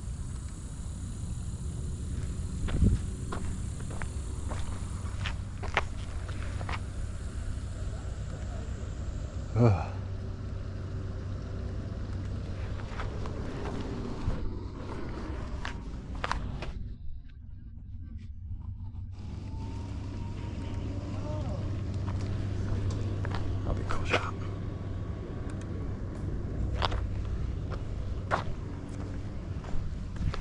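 Outdoor ambience: a steady low rumble with scattered light clicks and taps, two of them louder, near the start and about a third of the way in.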